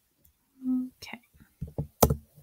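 A woman's short hummed 'mm' about two thirds of a second in, followed by soft muttering and a few light taps on a laptop keyboard as line breaks are typed into the text.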